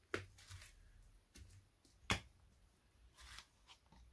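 Oil bottles being handled, capped and uncapped: a few light clicks and knocks, the sharpest about two seconds in.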